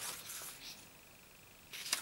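A thick paper poster handled on a wooden tabletop: light papery rustling at the start, then a louder brief rustle of the sheet being lifted near the end.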